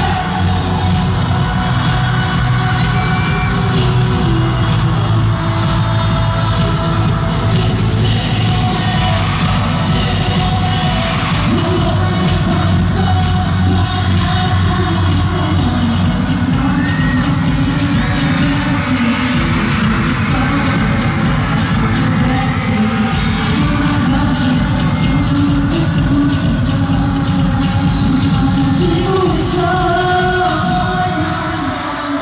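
K-pop dance track played loud over a concert sound system, a male vocalist singing over a steady heavy beat.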